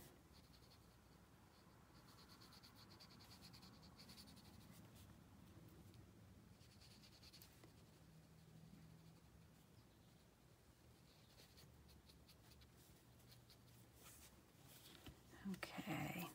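Faint scratching of a water brush's bristle tip stroking across cardstock, in short strokes with pauses, over near-silent room tone.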